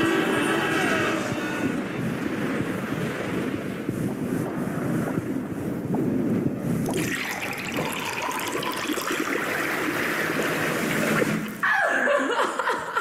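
Soundtrack of an animated sensory-overload simulation, played over a video call: a loud, dense jumble of everyday noises. It grows harsher about seven seconds in, and a falling sweep comes near the end.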